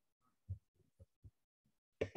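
Near silence, broken by three brief, faint low thuds, the first about half a second in and two more close together after about a second.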